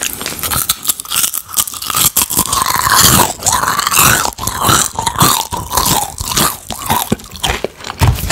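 Close-up crunching and chewing of Takis rolled tortilla chips: many sharp crunches in quick, uneven succession as the hard chips are bitten and chewed.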